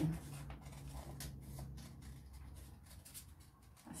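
Scissors cutting through paper: a run of faint, irregular snips with light paper rustling.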